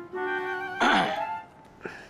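A held note of soundtrack music, then about a second in a man briefly clears his throat.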